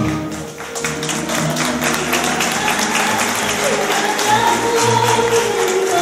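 Live song with a woman singing into a microphone while the audience claps along in time, a steady run of handclaps over the music.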